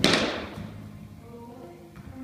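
A cricket bat striking the ball once: a sharp crack right at the start that dies away over about half a second in the echoing indoor net hall.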